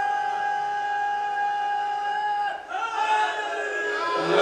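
A man's loud, long cry from the gathering, held on one steady pitch and breaking off about two and a half seconds in, followed by a shorter wavering call. It is a vocal response from the congregation to the preacher's line.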